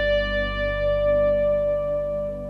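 The final chord of a rock song on a Fender Stratocaster electric guitar with its backing music, ringing on and slowly dying away.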